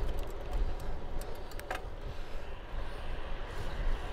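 Wind buffeting the microphone of a bicycle-mounted camera, with steady tyre noise from a road bike rolling on tarmac at about 16 mph. There are a couple of short clicks about one and a half seconds in.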